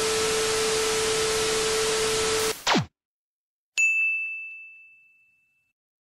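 Television static hiss with a steady test-card tone under it, cutting off about two and a half seconds in with a quick falling sweep. After a second of silence, a single high bell ding rings out and fades over about a second and a half.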